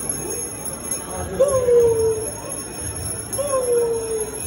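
Jingle bells ringing steadily in Christmas music, with a voice drawing out two falling notes, about a second and a half in and again near the end.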